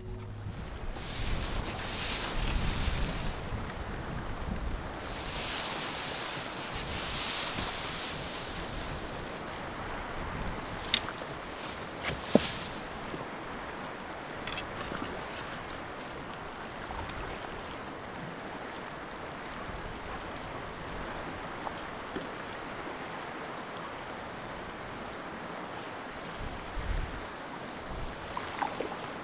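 River water flowing over rocks, a steady rush, louder and more gusty through the first half, with two sharp clicks around eleven and twelve seconds in.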